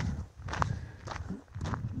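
Footsteps of a person walking outdoors, a few separate steps.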